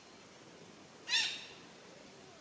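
A red-breasted parakeet gives a single short, harsh squawk about a second in.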